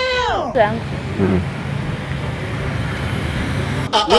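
Steady road traffic noise, a low rumble with hiss. It opens with the end of a long held pitched note that slides down and stops within the first half second.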